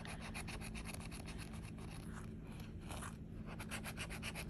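A handheld scratcher tool scraping the coating off a paper scratch-off lottery ticket in quick, even, repeated strokes.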